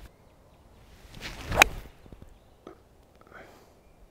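A golf swing: the club swishes through the air and strikes the ball with one sharp, crisp crack about a second and a half in. The contact is solid.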